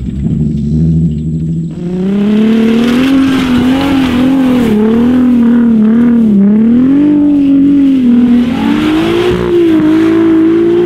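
Turbocharged 3.2-litre VR6 engine of a lifted VW Mk4 R32, driven hard off-road. A lower rumble for the first two seconds, then revving up, with the revs swinging up and down again and again and climbing once more near the end.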